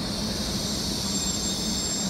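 CRH2A high-speed electric multiple-unit train slowing to a stop along the platform: a high squealing hiss sets in over a steady low rumble, with a thin high whistle joining about a second in.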